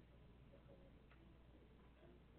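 Near silence: room tone with a steady low hum and a faint, barely audible voice, too quiet to make out.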